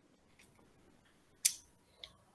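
Near silence in a pause between sentences, broken once about a second and a half in by a short, sharp hissy click.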